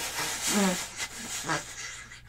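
A man blowing and hissing into his cupped hand to imitate wind noise blasting a microphone, a rushing hiss with a couple of short voiced sounds, fading toward the end. It mimics heater air blowing straight onto a recorder's mics and ruining the recording.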